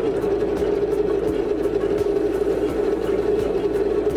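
A three-spindle string-wound polypropylene filter cartridge winding machine running steadily under production, with a constant hum and a faint regular ticking over it. A cartridge is building up on the winding shaft toward the diameter sensor.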